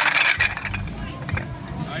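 Giant wooden Jenga tower collapsing: a loud burst of wooden blocks clattering against each other and onto the grass in the first half second, dying away quickly.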